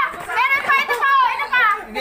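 Excited, high-pitched voices of several people talking over one another and laughing.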